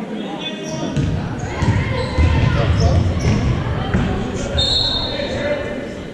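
Gymnasium sound of a basketball game in play: a basketball bouncing on the hardwood under the voices of players and spectators, echoing in the hall. About four and a half seconds in, a short high referee's whistle stops play.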